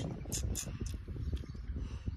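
Low rustling with a few light crackles, as dry leaf litter and twigs on the ground are disturbed while fallen fruit is picked up.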